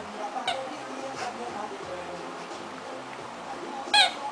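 Background music with steady notes, over which a puppy gives short high yelps: a faint one about half a second in and a louder one at the very end.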